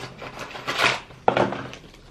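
Paper packaging being handled as a small cardboard advent calendar box is opened and a sachet pulled out: brief rustling, then a sharp tap about halfway through.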